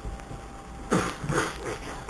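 A child making short coughing sounds: three quick bursts starting about a second in.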